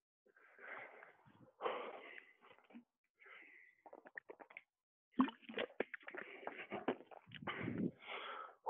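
A man breathing hard while resting after a round of high-intensity exercise, with quick swallowing sounds from a drink about four seconds in. From about five seconds in comes a run of clicks and knocks as he moves and gets to his feet.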